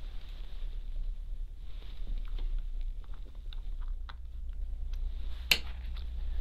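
Light clicks and ticks of small model locomotive parts being handled and set down in a plastic parts tray, with one sharper click about five and a half seconds in.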